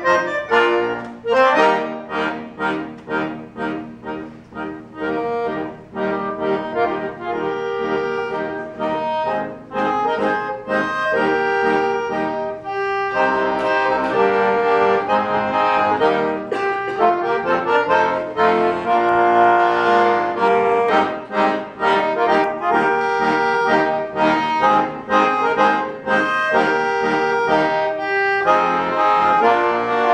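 Solo piano accordion playing a march: short, detached chords at first, then fuller, sustained playing from about a third of the way in.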